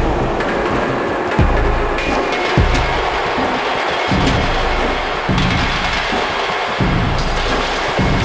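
Improvised industrial electronic music from analog drum machines, an Erica Synths Perkons HD-01 and a Soma Pulsar-23: heavy booming kick drums at an uneven pace, about one every second and a half, over a dense noisy wash with a few held tones.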